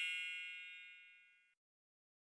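A ringing, bell-like ding sound effect, struck just before and fading away over about a second.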